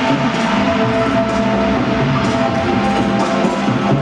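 Live electronic music: held synth notes over a bass line that comes and goes.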